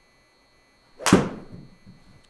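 A golf club striking a ball once, about a second in: a single sharp impact with a short fading tail. The ball is caught thin, low on the clubface.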